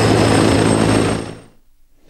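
T129 ATAK attack helicopter in flight: steady rotor and engine noise with a low hum and a thin high whine, fading out quickly about a second and a half in.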